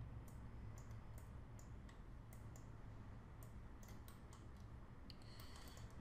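Faint, irregular clicks of a computer mouse, about a dozen spread unevenly, over a low steady hum.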